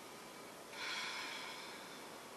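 A woman's single audible breath while holding a plank: a soft hiss that starts sharply under a second in and fades away over about a second.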